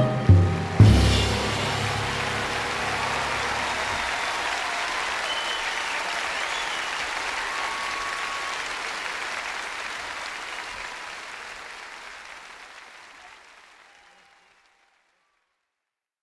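A music track ends with a last loud hit about a second in, followed by an audience applauding that slowly fades out, gone by about 14 seconds in.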